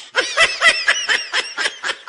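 A person laughing in a quick, high-pitched run of short ha-ha pulses, about six or seven a second.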